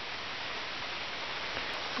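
Light rain falling steadily, an even hiss with no distinct drops.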